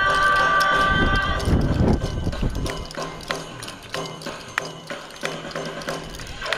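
Dance music's held chord stops about a second and a half in. It is followed by sharp, scattered clacks from yosakoi naruko, wooden hand clappers shaken by the dancers.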